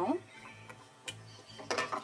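A few faint clicks and clinks of a glass pot lid being lifted off a cooking pot, under quiet background music.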